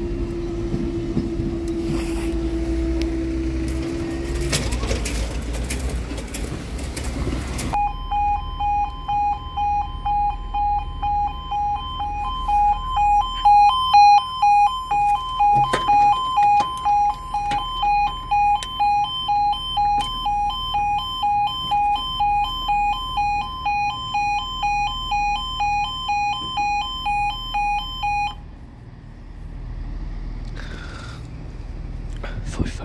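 A steady hum with rattling for the first few seconds. Then, from about eight seconds in, a level crossing's electronic two-tone yodel alarm pulses about twice a second, warning that the barriers are lowering, and cuts off shortly before the end.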